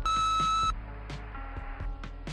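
A single loud answering-machine beep, a steady high tone lasting under a second at the start, over background music with a steady drum beat.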